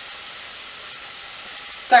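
Ground turkey sizzling steadily in hot oil in a stainless steel pot on an electric stove, an even frying hiss.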